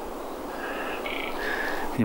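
Tree branches rubbing against each other and creaking, a few drawn-out creaks about halfway through, over a steady outdoor hiss.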